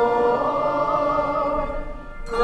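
Handbell choir ringing a slow carol: held chords of bell tones ring on, a new chord comes in about half a second in, and the sound dies away near the end.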